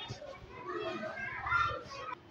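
Background chatter of children's voices, several at once and none clear.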